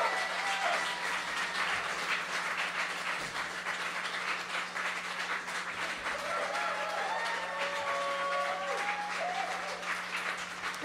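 Small audience clapping once the song has ended, a steady spread of hand claps with a few voices calling out at the start and again partway through, over a low steady hum.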